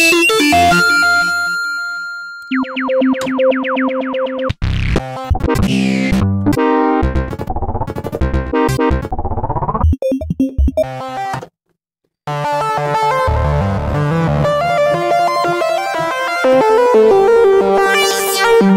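Sylenth1 software synthesizer presets played one after another from a keyboard: a run of short, different synth patches, some with rising sweeps, then a brief break a little past the middle. After the break a busy arpeggiated pattern of rapid repeating notes runs on.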